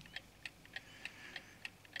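Faint, regular ticking, about three ticks a second, over quiet room tone.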